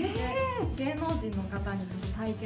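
A woman's voice in one long exclamation that rises and then falls in pitch, followed by more talk, over background music.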